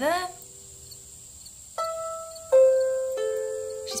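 Small harp plucked slowly: three single notes about two-thirds of a second apart, starting about two seconds in, each left ringing, the second the loudest.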